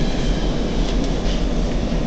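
Steady, loud low rumble of a ship's engines and machinery, heard from inside the vessel.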